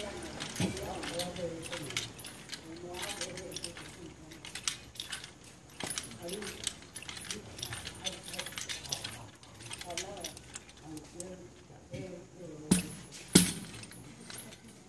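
Clicking and clattering from a small wooden hand palanquin (divination chair) jostled between two men's hands, with two loud wooden knocks less than a second apart near the end. Voices murmur underneath.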